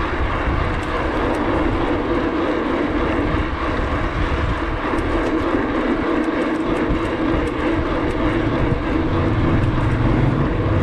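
Steady rushing noise of a bicycle being ridden along a city street: wind on the microphone and tyres on the road surface.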